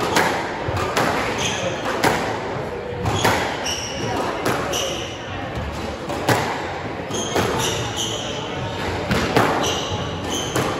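Squash rally: the rubber ball cracks off rackets and the front and side walls about once a second, ringing in the enclosed court, while court shoes squeak sharply on the hardwood floor between shots.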